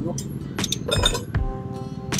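A few sharp metallic clinks with a brief ring, the loudest about one second in, from a socket ratchet wrench being worked on a bolt in a truck's steering.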